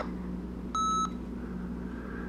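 Sony ICD-SX733 digital voice recorder giving one short electronic beep about three-quarters of a second in, as playback reaches the end of the file.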